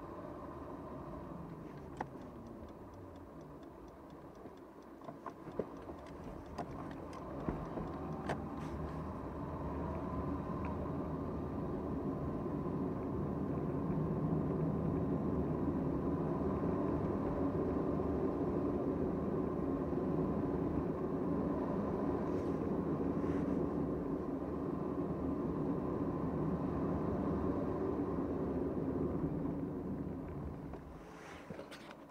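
Car interior sound picked up by a dashboard camera: low engine and tyre noise with a few light clicks while moving off slowly, growing louder from about ten seconds in as the car picks up speed, then a steady road rumble that eases near the end as it slows.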